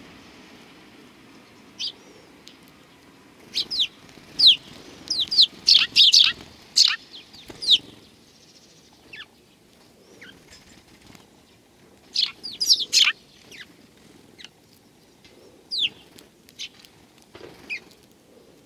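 Eurasian tree sparrows chirping close by: short, sharp chirps in quick flurries, busiest from about four to eight seconds in and again around twelve to thirteen seconds, with single chirps in between.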